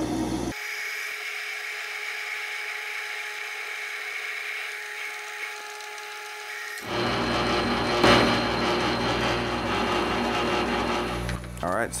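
Metal lathe running, its cutting tool turning down a steel shank: a steady machine sound with a few held tones. For the first six seconds or so it sounds thin, with no low end, then it becomes fuller about seven seconds in, with a sharp click a second later.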